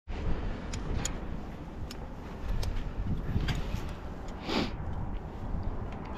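Wind rumbling on the microphone high on an open platform, broken by a few light clicks and rustles of harness hardware and clothing, and a short swish about four and a half seconds in.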